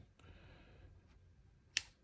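Faint handling rustle, then one sharp click near the end as an Apple Pencil Pro is set against the magnetic side edge of an iPad Pro.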